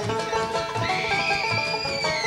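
Bluegrass band playing an up-tempo tune led by banjo, with a steady bass beat. About a second in, a girl's voice lets out a long, high whoop into a microphone, held and then falling off at the end.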